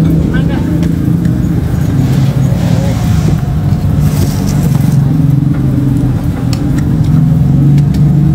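A motor vehicle engine running steadily close by, a loud, even low hum, with people talking over it.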